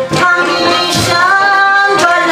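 A Chitrali folk song in Khowar: a voice holding a long sung note, with drum strokes near the start and about a second in.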